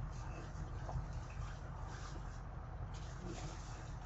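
Faint chewing and small wet mouth smacks from someone eating a piece of chocolate fudge, heard over a steady low hum.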